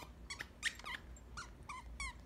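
A dog chewing a plush toy, with a string of short, high-pitched squeaks, several falling slightly in pitch.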